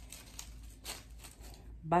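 Faint rustling and crackling of an artificial flower stem and its plastic leaves being pushed in among the dry twigs of a grapevine wreath, with a couple of short crackles about a half second and a second in.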